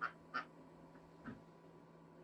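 Two short, quack-like animal calls in quick succession, then a fainter third call a little over a second in.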